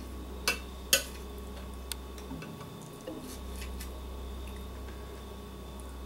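Light clicks and taps of a kitchen utensil and fingers against a ceramic plate while raw fish fillets are handled: two sharper clicks in the first second, then a few faint ticks, over a steady low hum.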